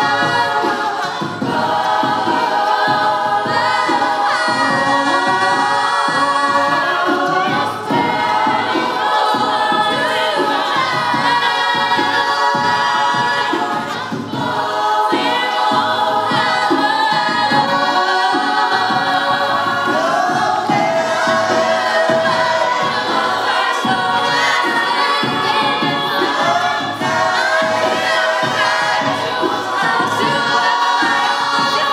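Mixed-voice a cappella group singing in harmony through stage microphones, the voices layered over a steady rhythmic low pulse.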